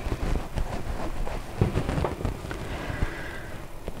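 Soft dull thumps and rustling of hands folding and pressing puff pastry against a stainless steel worktop.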